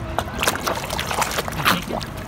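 Water splashing and sloshing in a shallow touch tank as stingrays flap at the surface around a hand to take food, a string of sharp splashes with the loudest near the end.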